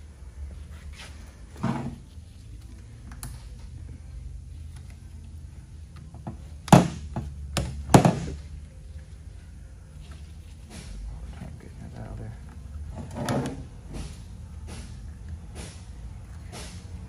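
Clicks and knocks of a 6L90E transmission valve body and its metal parts being handled on a steel workbench, with two loud sharp knocks near the middle. A steady low hum runs underneath.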